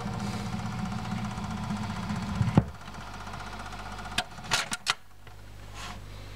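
Record-player stylus riding the run-out groove of a 45 rpm single, a rough repetitive rumble that stops with a sharp click about two and a half seconds in as the tonearm is lifted. A few more handling clicks follow, over the player's steady low hum.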